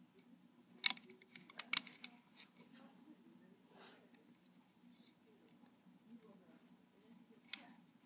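A few light, sharp clicks and snaps of rubber loom bands being stretched onto the plastic pins of a Rainbow Loom: two or three close together in the first two seconds and one more near the end, otherwise faint.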